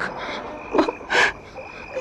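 Frogs calling over a steady, thin, high-pitched tone, a night-by-the-water sound-effect bed. A weak, breathy voice gasps out 'Ma' in two short breaths, about a second in: a dying man's last words.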